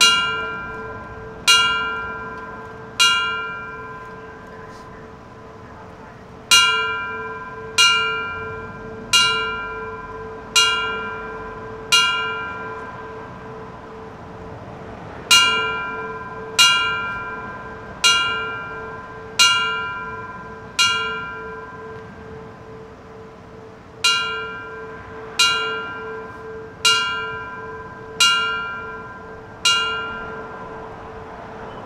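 A fire bell struck in the four fives for a final alarm: single strokes about a second and a half apart, each ringing out and fading. The strokes come in sets of five with pauses of about three seconds between sets. The last three strokes of one set are heard, then three full sets of five.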